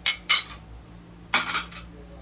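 Glazed ceramic dishes clinking against each other and the surface as they are handled: two quick clinks at the start, then another short clatter about a second and a half in.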